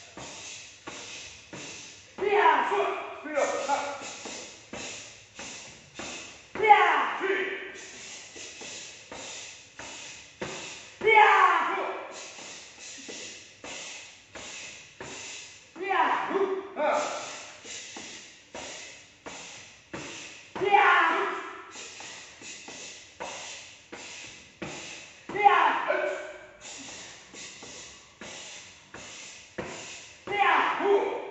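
Karate kicks and strikes landing on a training partner's body, short sharp impacts about two a second, in a reverberant hall. A loud shout that falls in pitch comes about every four to five seconds.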